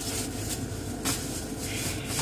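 Steady hum and fan hiss inside a parked car's cabin, with a few faint knocks and rustles as someone reaches into the back seat.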